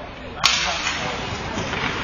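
A single sharp crack about half a second in as the puck is dropped at a centre-ice faceoff and the hockey sticks strike the puck and each other. It is followed by a steady hiss of skate blades on the ice and arena noise.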